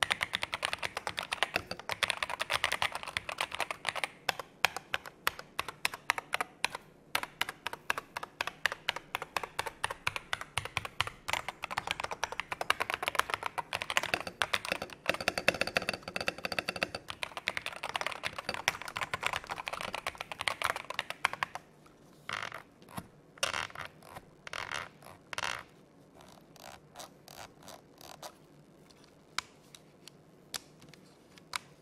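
Typing on an EPOMAKER Brick 87 tenkeyless mechanical keyboard: a fast, continuous run of keystrokes for about twenty seconds. Then come a few short bursts of key presses and, near the end, only scattered single presses.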